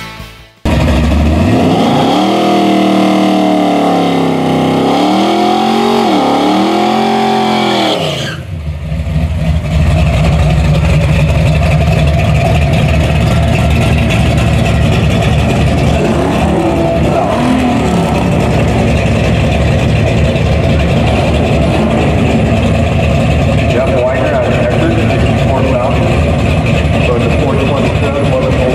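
A 427 wedge V8 in a 1964 Ford Falcon drag car revved up and down several times. After a sudden cut about 8 seconds in, it runs loud and steady at idle at the drag strip starting line.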